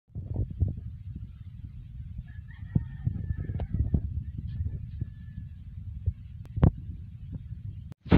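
Low rumble of wind buffeting the phone's microphone, broken by handling knocks and footfalls, the loudest knock a little after six and a half seconds. Faint, drawn-out animal calls sound in the background from about two to five seconds in.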